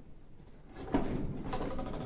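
A single sharp knock about a second in, following a quieter stretch.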